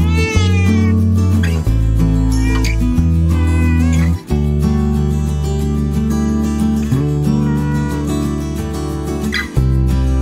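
A cat meowing several times: a long drawn-out call at the start, then shorter calls a few seconds in and again near the end. Background music with loud bass notes plays throughout.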